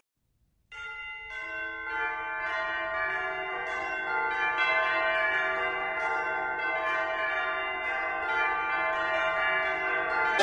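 Background music of ringing bells: after a brief silence at the start, notes enter one after another and keep ringing, building into a sustained chord of bells.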